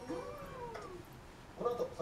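A single drawn-out cry in the first second, rising and then falling in pitch, followed near the end by a man's voice starting to talk.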